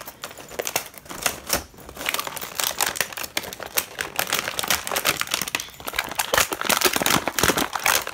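Clear plastic packaging of a toy tool set crinkling and crackling as it is handled, in a dense, irregular run that gets busier in the second half.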